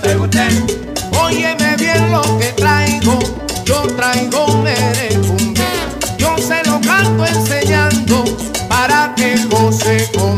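Recorded salsa band music: a repeating bass line and steady percussion under bending melodic lines. The sung chorus breaks off right at the start.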